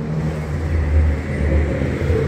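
Motor vehicle engine running nearby, a low rumble that swells about a second in as it passes.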